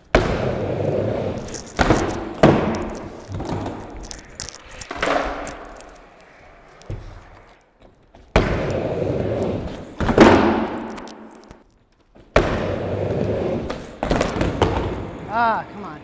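Skateboard rolling on a wooden mini ramp, with sharp knocks from the board hitting the metal coping and landing. It happens in three runs, each cutting in abruptly.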